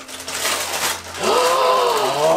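Paper gift wrapping and a plastic snack bag rustle and crinkle as the bag is pulled out. About a second in comes a long drawn-out vocal "ooh" of delight, its pitch dipping and rising.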